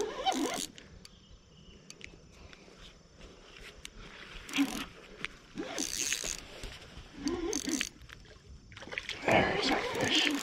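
Several short splashes from a hooked chinook salmon breaking the water's surface as it fights the line, the biggest near the end. Short grunts and mutters from the angler come in between.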